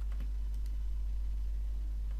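A few faint clicks from computer input during the first second, over a steady low hum.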